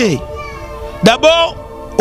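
A man's voice in short expressive bursts, one drawn out and bending in pitch about a second in, over background music with steady held notes.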